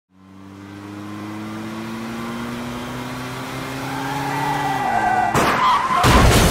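Cinematic trailer sound design: a low layered drone fading in and slowly rising in pitch, a high whine swelling over it, then a sudden loud crash-like hit about five seconds in.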